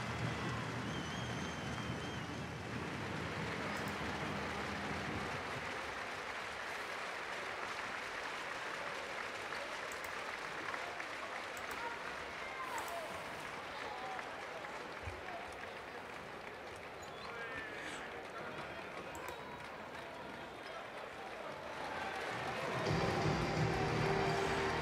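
Basketball arena crowd applauding steadily after a home win.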